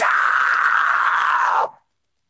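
Deathcore vocalist's harsh screamed vocal on an isolated vocal track with no instruments: one long held scream that cuts off near the end into silence.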